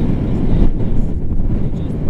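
Wind from the airflow of a tandem paraglider in flight buffeting the camera microphone: a loud, steady low rumble.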